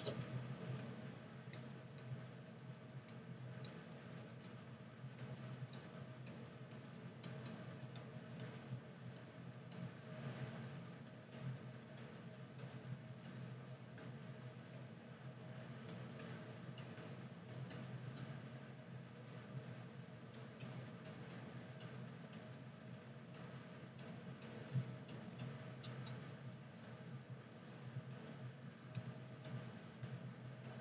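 Faint, irregular light clicks and taps from working a computer's input devices while painting digitally, over a steady low hum.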